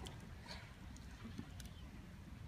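Hushed concert hall just before a choir begins: a low steady room rumble with a few faint scattered rustles and small knocks from the waiting audience and singers.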